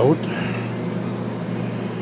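A steady low mechanical hum with a fixed pitch, from running machinery in the background.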